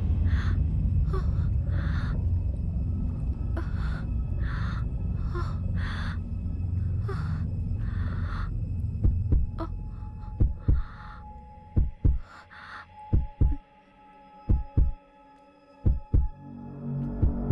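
Suspense film sound design. A low rumbling drone comes with a run of short hiss-like bursts, then fades after about nine seconds. A slow heartbeat effect follows, in double thumps about a second and a half apart, over a faint steady hum.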